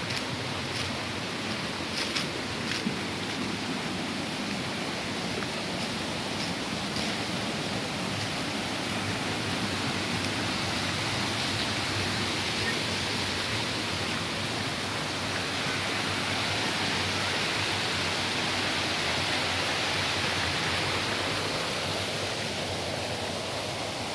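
Steady rush of running stream water that grows louder through the middle as it is approached. A few footsteps crunch on dry leaf litter in the first few seconds.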